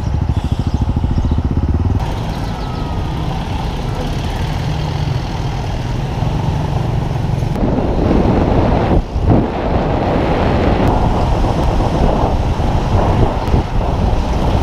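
Street traffic with motorcycle and scooter engines running, heard from a moving motorcycle as a loud, steady, noisy rumble. The sound changes abruptly about two seconds in and again near the middle, where one street clip cuts to the next.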